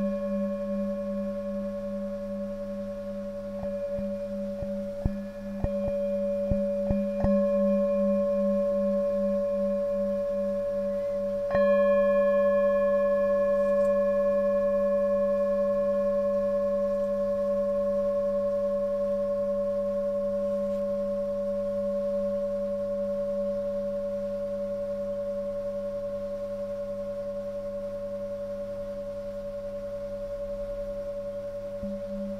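A hand-held 17.5 cm five-metal singing bowl, with a fundamental near 189 Hz, ringing with a low tone that pulses in a slow wobble over several higher overtones. A few light clicks come a few seconds in. About a third of the way through, the bowl is struck again and rings out with a slow fade.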